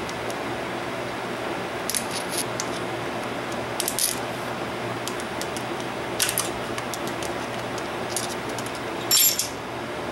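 Light metallic clicks and scrapes of a screwdriver tip working a steel axle C-clip loose inside an open rear differential, over a steady background hum. About nine seconds in comes a brighter, ringing clink as the clip comes free.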